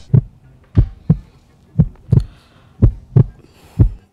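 Heartbeat sound effect: deep double thumps, lub-dub, repeating about once a second, laid over a tense silent reaction shot.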